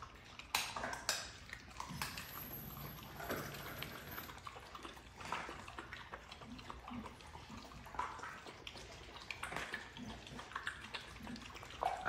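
Bandog puppy eating raw chicken and watery food from a metal tub: irregular wet chewing and lapping, with frequent small clicks and knocks against the bowl.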